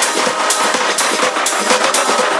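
Tech house DJ mix in a breakdown: the bass and kick drum drop out, leaving percussion hits about twice a second over sustained synth tones.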